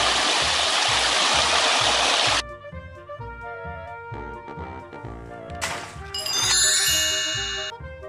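Steady rushing noise of a concrete mixer truck pouring wet concrete down its chute, cut off suddenly after about two seconds. Then background music with a steady beat, with a run of bright chimes near the end.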